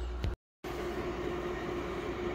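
Steady whir of a Fiery image controller's cooling fan, with a constant hum tone. A short dropout to silence comes a moment after the start.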